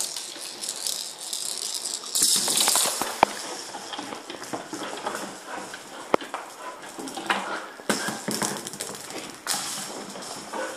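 A kelpie playing with a small ball on a hardwood floor: the ball rattles and rolls across the boards amid scuffling claws and paws, with two sharp knocks about three and six seconds in.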